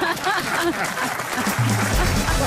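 Studio audience applauding, with a music jingle coming in under it about one and a half seconds in.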